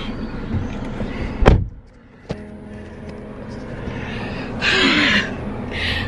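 Car door slammed shut about a second and a half in, after which the outside street noise drops away to the closed cabin; a click follows, then a low steady hum and a short rustle near the end.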